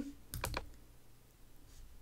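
Two quick computer mouse clicks, close together, about half a second in, selecting an item on screen.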